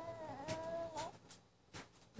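Baby giving one high-pitched, drawn-out squeal of excitement lasting about a second, followed by a few short clicks.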